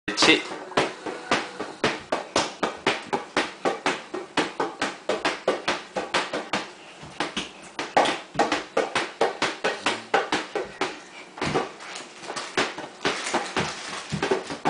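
A large rubber ball bounced over and over by hand on a hard tile floor, in a quick, fairly regular run of bounces at about three a second.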